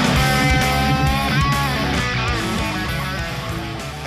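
Electric guitar strung with D'Addario NYXL strings playing held lead notes, with one note bent up partway through. The playing fades toward the end.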